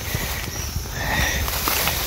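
Footsteps and rustling through grass, with irregular bumps of handling noise on the phone's microphone.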